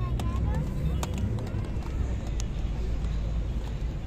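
Indistinct chatter of an outdoor crowd over a steady low rumble, with scattered small clicks.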